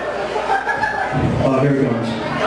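A man's voice talking and chuckling into a microphone over a PA, with no music playing.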